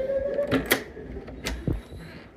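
A door knob and latch being worked as a door is opened: a few sharp metallic clicks in two pairs, about a second apart, after a short whine at the start.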